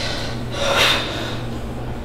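A person's short, sharp breath about halfway through, over a steady low hum.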